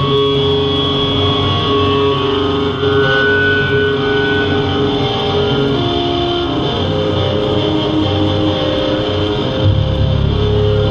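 Live hardcore band playing with no vocals: distorted electric guitars and bass hold long ringing notes that change every second or two, over light cymbal hits.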